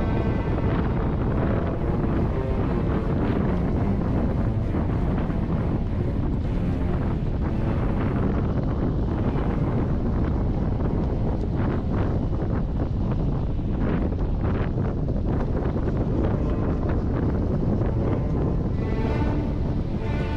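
Wind rushing loud and steady over the microphone at an open car window while the car drives, with short gusty buffets. Background music fades out about a second in and comes back near the end.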